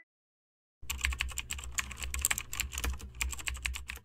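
Computer keyboard typing sound effect: rapid, irregular key clicks over a low hum, starting about a second in.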